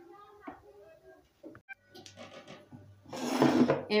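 Plastic bag of powdered sugar crinkling loudly for about a second near the end as it is handled. Faint voices can be heard in the background before it.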